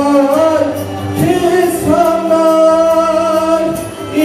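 A man singing into a handheld microphone, holding long notes with ornamented bends and glides, over a steady low drone in the accompaniment.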